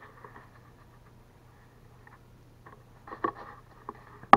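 Quiet handling sounds: a few soft rustles and light taps about three seconds in, as the camera and a cardboard pizza box are moved, over a faint steady low hum.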